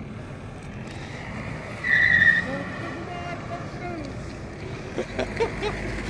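A BMW 530d's tyres skidding as the car drifts, over a steady rush of engine and tyre noise. One loud, high, steady tyre squeal comes about two seconds in and lasts about half a second.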